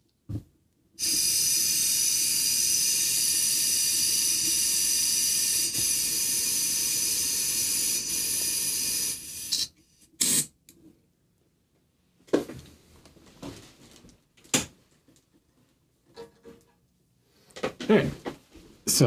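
Airbrush blowing air and cleaner into an airbrush cleaning pot while being flushed out: a steady loud hiss for about eight seconds, then one short burst. A few light clicks and knocks of handling follow.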